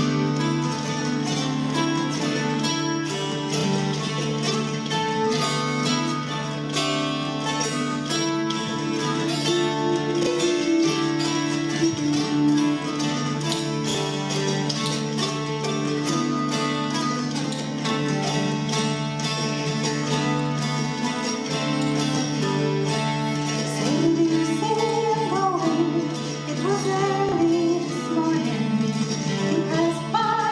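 Mountain dulcimers playing a folk tune in an ensemble, plucked melody notes over a steady drone. Near the end a woman's voice begins singing.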